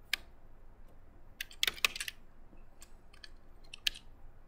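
Typing on a computer keyboard: irregular keystrokes, with a quick run of several in the middle.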